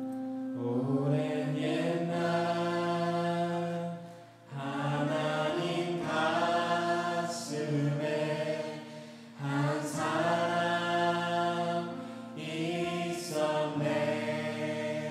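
A worship team of men's and women's voices sings a slow Korean praise song together into microphones. The voices come in about half a second in and hold long phrases, with short breaks for breath every four or five seconds. A steady low note sounds underneath.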